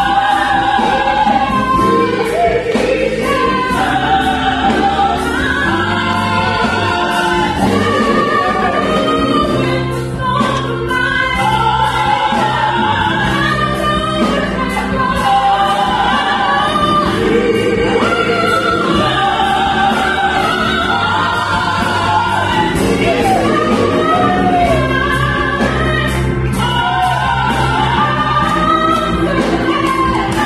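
A women's gospel vocal group singing in harmony through microphones, over sustained keyboard chords and bass.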